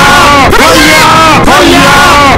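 Very loud overlapping shouted voices, a run of yells that each rise and fall in pitch, repeating several times.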